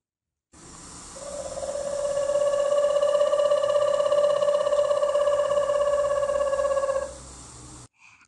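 Recorded eagle call: one long, steady, rapidly trilled note lasting about six seconds, over a background hiss.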